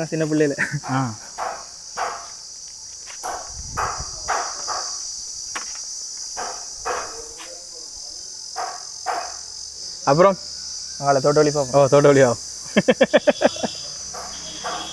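Steady, high-pitched insect chorus running under the scene. A man's voice comes in briefly just after the start and again about ten seconds in, followed by a quick run of short pulses near the end.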